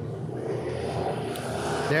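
A field of dirt-track factory stock cars running on the oval, a steady blended engine drone that grows slightly louder toward the end as the pack takes the restart.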